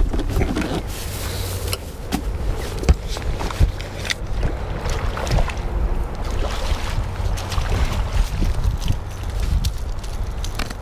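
Steady low rumble on the microphone, with repeated sharp knocks and clatter as a striped bass is netted at the side of a bass boat, its deck and gear being handled.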